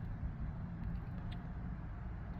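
Nissan vehicle's engine idling, a low steady rumble heard from inside the cabin, with a few faint clicks.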